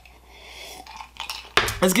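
A man sipping from a ceramic mug, then the mug clinking as it is set down. He starts to speak near the end.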